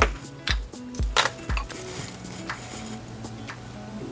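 A few light knocks and taps, about five in the first two seconds, as small nail-art items (a gel polish pot and lid, a swatch stick) are handled and set down on a desk. Soft background music runs underneath.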